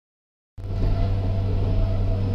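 Steady low rumble with a faint hum inside a passenger train carriage, cutting in abruptly about half a second in.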